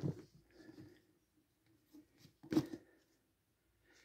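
A hardback book slid back onto a wooden bookshelf, one brief soft scrape about two and a half seconds in; otherwise a quiet room.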